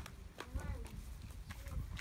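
Footsteps of someone walking in flip-flops, the soles slapping and scuffing on a concrete walkway in a series of irregular light clicks.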